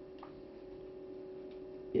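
Quiet room tone with a steady electrical hum and one or two faint ticks. A voice cuts in sharply right at the end.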